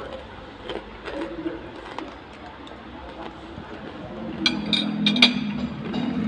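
A metal fork and spoon working on a ceramic plate: a few light taps early on, then a quick run of sharp clinks about four and a half to five seconds in.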